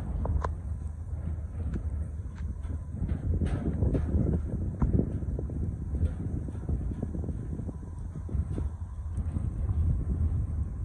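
Wind buffeting the microphone, with irregular light knocks of footsteps on a steel-grating gangway.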